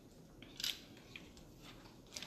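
Faint handling noise from a rifle being turned in the hands: a short soft click with a rustle about half a second in, and a lighter tick a little after a second.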